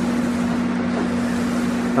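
Paint roller on an extension pole rolling paint up a wall, a steady rushing hiss over a constant low hum.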